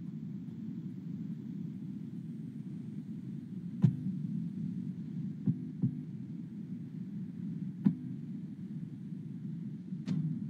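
Steady low background hum with four short, sharp clicks: one about four seconds in, two close together about a second and a half later, and one near eight seconds.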